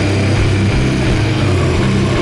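Doom metal band playing: heavily distorted electric guitars and bass holding loud, low, droning chords.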